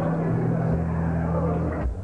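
Live metal band playing through the PA: heavily distorted guitars and bass hold sustained low notes that shift in pitch, with a brief break just before the end.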